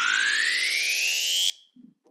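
A synthesized rising sweep sound effect, its pitch climbing steadily and smoothly, that cuts off abruptly about a second and a half in. It serves as a scene transition.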